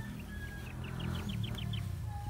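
A bird calling a rapid run of about nine short, high notes about a second long, over a steady low rumble.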